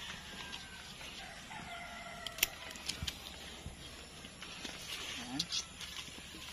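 A rooster crowing once, a long drawn-out call through the first half. It comes with a few sharp snips of scissors cutting okra pods off their stems, the loudest about halfway through.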